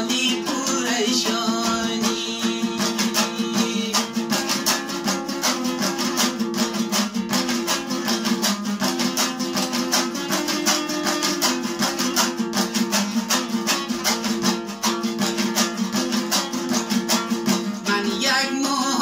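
Afghan dambura, a two-stringed long-necked lute, strummed fast and evenly in an instrumental passage, its rapid strokes running over a steady low drone.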